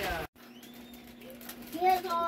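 A man's voice cut off abruptly, then a faint steady hum with a brief faint voice near the end.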